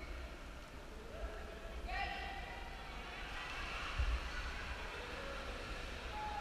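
Indistinct voices of people talking in a cave chamber, with no clear words, over a low rumble. A brief thump comes about four seconds in.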